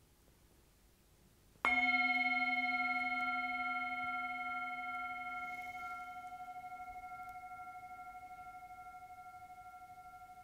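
A singing bowl struck once, about one and a half seconds in, then ringing on and slowly fading, its tone wavering in a slow regular beat.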